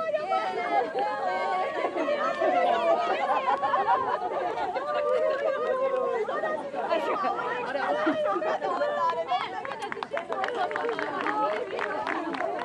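Many children's voices talking and calling out at once, overlapping into a loud chatter. A run of short sharp clicks comes near the end.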